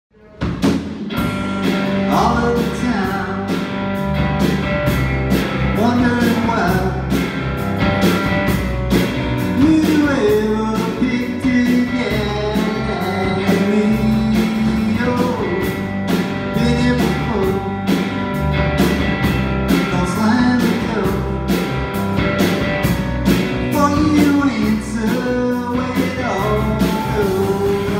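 Live rock band playing: acoustic and electric guitars over a drum kit keeping a steady beat, starting about half a second in.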